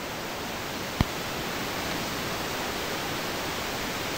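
Steady, even hiss of background room noise, with a single sharp click about a second in.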